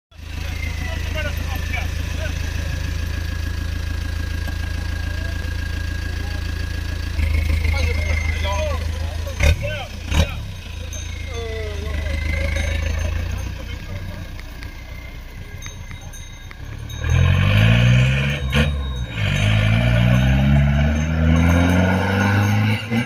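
A lifted off-road 4x4's engine idling steadily, picking up a little about a third of the way in, with two sharp clicks shortly after. Near the end it pulls away hard, its revs climbing and dropping back several times as it shifts up through the gears.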